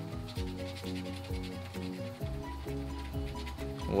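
Background music with stepped notes over a steady bass, with the faint rasp of a coin scratching the coating off a lottery scratch-off ticket beneath it.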